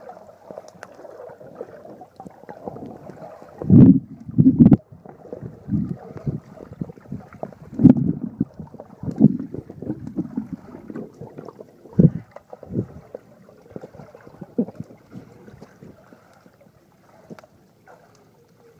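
Muffled underwater sound of swimmers struggling in a pool, heard through a submerged camera: sloshing water with irregular dull thumps as bodies and limbs push and kick. The thumps are strongest about four and twelve seconds in and thin out near the end.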